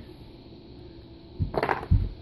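Computer cables and connectors being handled: a short clatter of knocks and clinks about a second and a half in, ending on one sharper knock.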